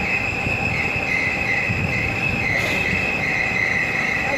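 Large ventilation fans in a cattle shed running: a steady rush of noise with a continuous high-pitched whine over it.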